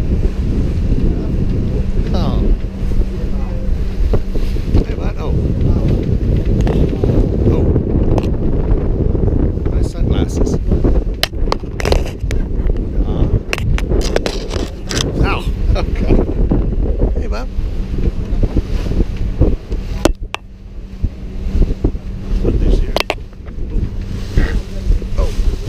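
Wind buffeting the camera microphone on a moving motor boat, over the steady hum of the boat's engine. A run of sharp taps and knocks comes through the middle stretch.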